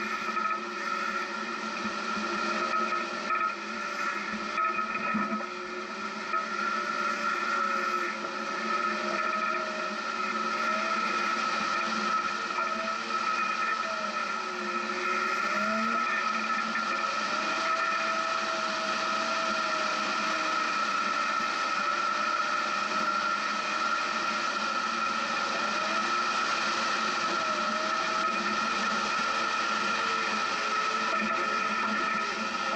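Off-road 4x4's engine running as it crawls along a sandy dirt trail, its pitch slowly rising and falling with the throttle over a steady high whine.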